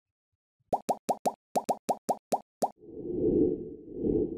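Logo-animation sound effects: about ten quick, sharp pops in a row, then a low whoosh that swells up near the end.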